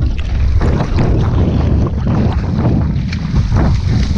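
Sea water splashing and sloshing right against the camera as a swimmer strokes through choppy open water, over a heavy low rumble of water and wind buffeting the microphone.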